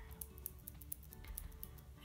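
Metal eyelash curler clicking lightly as it is squeezed and released on the lashes, a quick series of small clicks, over faint background music.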